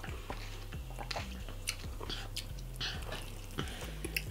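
Close-up mouth sounds of a person chewing battered fried conch, with scattered short crisp clicks as the breading is bitten and chewed. A faint steady low hum runs underneath.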